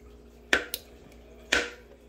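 Kitchen knife clicking down onto a plastic cutting board while trimming a small piece of chili pepper: a sharp click about half a second in, a fainter one just after, and another about a second and a half in.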